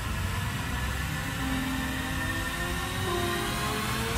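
Trailer sound design: a steady low drone over a haze of noise, with a tone that slowly rises through the second half, building tension toward the next hit.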